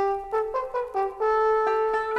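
Instrumental music: a melody of a few short notes, then a long held note from about halfway through.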